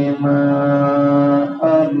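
A man's voice chanting in long, held notes, the melodic intoning of a Bangla waz sermon. One note is held steady for over a second, then after a brief break a new note begins near the end.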